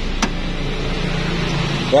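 Steady hum and hiss inside the cabin of an idling 1991 Toyota Kijang Super, with one sharp click about a quarter second in.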